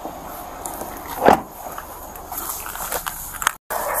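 A car door being opened by its handle, with one loud thump about a second in, then a few light clicks. The sound cuts out briefly near the end.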